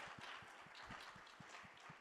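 Faint, scattered applause fading out, reduced to a few separate claps.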